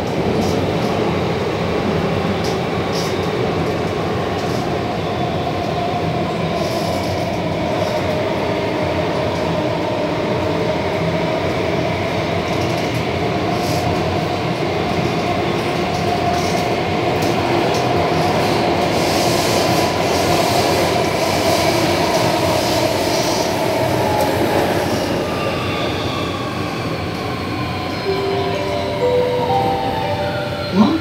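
SBS Transit C751C metro train running, heard from inside the car: steady rumble of wheels on rail with a whine from the traction motors. Over the last few seconds the whine falls in pitch as the train slows for the next station.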